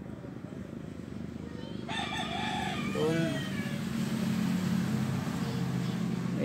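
A rooster crowing about two seconds in, one call of roughly a second and a half that falls in pitch at the end, over a steady low hum.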